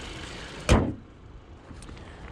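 Car hood slammed shut about two-thirds of a second in, one sharp bang over the steady idle of the Kia Seltos's 1.6-litre turbocharged four-cylinder. After the slam the idle sounds duller, muffled by the closed hood.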